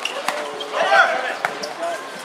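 A volleyball being hit during a rally, with sharp hits about a third of a second in and again about a second and a half in. A player's shout, the loudest sound, falls between the two hits.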